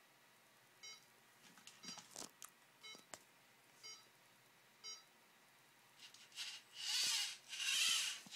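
LEGO Mindstorms NXT brick's speaker giving a series of short electronic beeps about a second apart, the start-up countdown before the leJOS Segway program begins balancing, with a few light clicks between them. From about six seconds in come louder bursts of noise.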